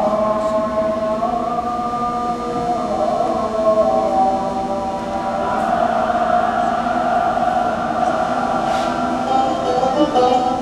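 Hebrew worship music from a projected music video, played back over loudspeakers into a hall. It starts abruptly and moves through long held, choir-like notes.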